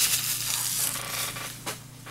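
Plastic packaging crinkling and rustling as it is handled, dying away over the two seconds, with a single light tap near the end.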